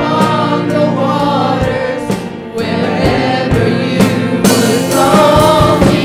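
Live worship song: a woman sings the melody into a handheld microphone over a band with electric guitar, with repeated sharp drum hits under the voice.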